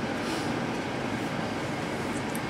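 Steady room noise between sentences: an even hum and hiss with no distinct events.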